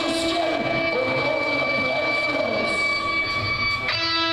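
Distorted electric guitars in a live sludge-metal band hold a droning chord with a high, steady feedback whine, and bending tones waver underneath. A new chord is struck just before the end.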